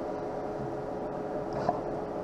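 Automated lens edger running, a steady mechanical hum with one held tone, its door and clamp shut on the lens just after start. There is one small click near the end.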